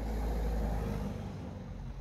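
A vehicle passing: a low rumble with tyre hiss above it swells, peaks about half a second in, and fades away over the next second.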